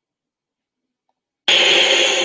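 Dead silence, then about one and a half seconds in a sudden loud rushing whoosh starts: the opening sound effect of a video's intro jingle, just before its chime notes.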